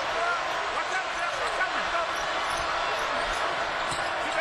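Basketball game sound in an arena: a steady crowd hubbub, with the ball being dribbled on the hardwood court and faint shouts and squeaks from the floor.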